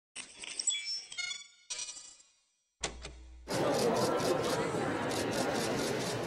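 A short intro jingle of high chiming notes lasting about two seconds. After a brief gap and a click, a steady hubbub of voices starts about three and a half seconds in, dotted with rapid camera shutter clicks.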